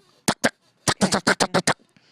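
A person's mouth imitation of M16 rifle fire: short staccato clicks, two quick ones and then a fast run of about eight about a second in, which sounds like a duck.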